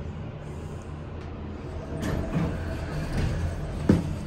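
Dover hydraulic elevator running, heard from inside the cab: a steady low hum. The noise grows about halfway through, and a single thump, the loudest sound here, comes just before the end.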